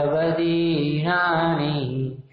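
A man chanting the closing words of a Prakrit verse in a slow, melodic recitation. His voice holds long notes that step between pitches and stops just before the end.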